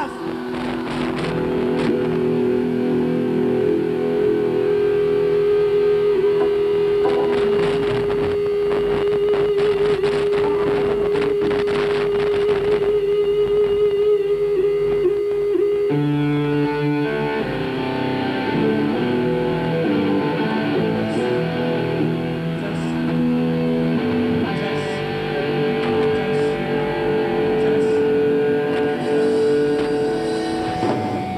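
Rock band playing live, led by an electric guitar holding one long sustained note that wavers with vibrato over held chords, then moving into changing chords about halfway through.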